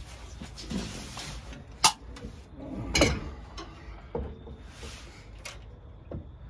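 Sharp clicks and knocks of metal parts and tools being handled in a car's engine bay: one loud click about two seconds in, a heavier knock about a second later, and a lighter click near the end.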